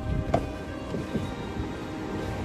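Background music with soft held notes, and a short sharp click about a third of a second in.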